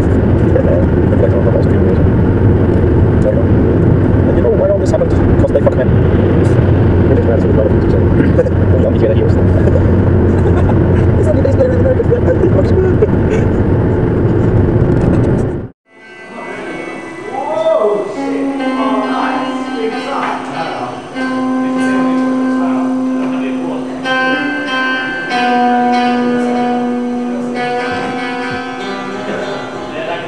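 Loud, steady road and engine noise inside a car at motorway speed. After a sudden cut about sixteen seconds in, an amplified electric guitar plays long held notes on stage.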